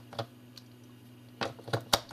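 AAA batteries being pressed into a black plastic four-cell battery holder: a few sharp plastic clicks and knocks, one just after the start and a quick cluster near the end.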